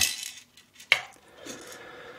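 Handling noise from a small thermal printer being taken apart by hand: one sharp click of hard parts about a second in, then a faint, steady scraping as the print mechanism is worked free of its plastic case.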